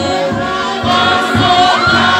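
A crowd of many voices singing together, choir-style, loud and continuous, with melodic lines gliding in pitch.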